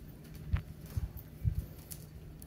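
A few soft, low thumps about half a second apart, with a light click on the first: a kitten pawing and pouncing on a fabric pop-up cat tunnel on carpet.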